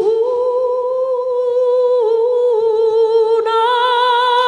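A woman's voice holding long sung notes with a wavering vibrato and little accompaniment, the closing notes of a huapango. The pitch steps up just after the start, drops at about two seconds, and rises again near the end.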